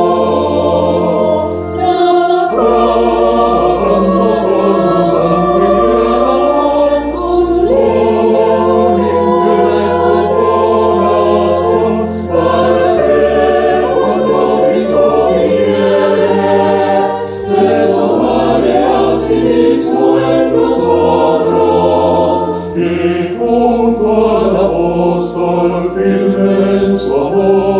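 Mixed choir of men's and women's voices singing a slow Spanish-language hymn in parts, accompanied by an electronic keyboard holding low sustained bass notes that change every couple of seconds.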